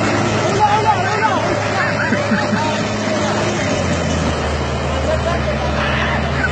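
A heavy machine's diesel engine runs steadily, with several people's voices calling out over it, mostly in the first half.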